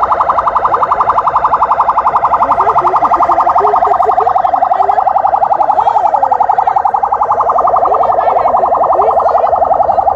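Electronic vehicle siren sounding continuously with a fast pulsing warble, as used to clear the way for a car convoy.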